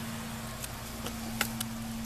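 A steady low mechanical hum, with a few faint clicks from the camera being handled.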